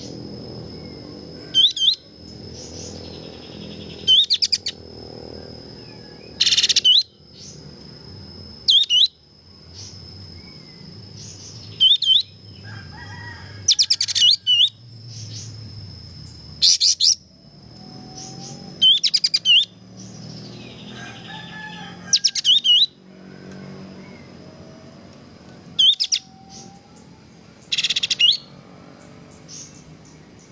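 Bird-training mix of songbird sounds: short, sharp, high calls with quick pitch sweeps, repeated about every two seconds, over a steady high insect trill.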